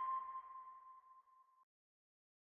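A single electronic ping sound effect: one clear tone that rings on and fades out over about a second and a half.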